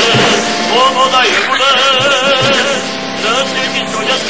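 Recorded Walloon song: a melody with a strong, wavering vibrato over a steady held accompaniment.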